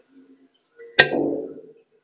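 A single sharp drum hit about a second in, with a short pitched ring that dies away within about a second.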